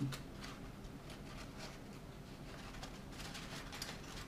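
Faint rustling and soft crackling of folded origami paper as box modules are spread open and slotted together by hand.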